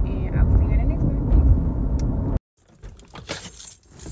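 Steady low rumble of a car cabin on the move; about two and a half seconds in it cuts off suddenly. Light clicking and jingling follow as things are handled.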